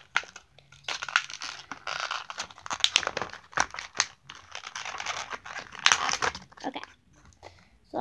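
Plastic wrapper of a Tsum Tsum mystery pack crinkling and crackling as it is handled and torn open by hand, with many quick crackles, dying down about a second before the end.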